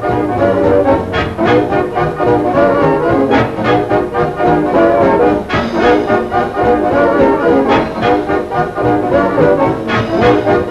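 A 1940s swing big band playing, brass and saxophones together over string bass and drums.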